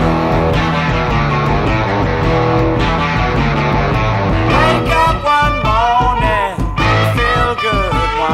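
Electric guitar lead played along with a backing blues-rock band recording, with several bent notes in the second half.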